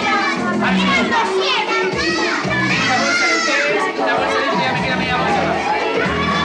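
A group of children shouting and calling out over one another, many high voices at once.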